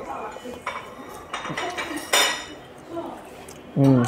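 Dishes and cutlery clinking, with small clicks and one sharp, ringing clink about two seconds in.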